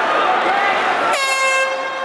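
Shouting voices, then about a second in a single air horn blast of about half a second, ringing on briefly in the hall as the signal to stop fighting.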